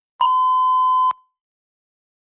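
Test timer's electronic beep: one steady tone held for about a second, then cut off sharply. It signals that preparation time is over and speaking time begins.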